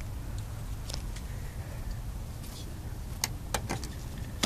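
Car engine idling steadily, with a few light, irregular clicks from the spark tester being handled.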